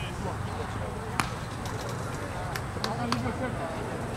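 A pitched baseball smacking into a catcher's leather mitt: one sharp pop about a second in, then a few lighter clicks near the end, over steady outdoor ambience with faint voices.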